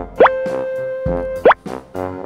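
Two short cartoon 'plop' sound effects, each a quick upward pitch sweep, about a second and a quarter apart, over background music holding one steady note. They are dubbed in for a toy rubber stamp being pressed onto paper.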